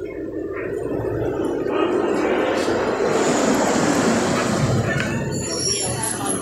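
A steady rushing noise, like a vehicle passing, that swells to its loudest around the middle and then eases off.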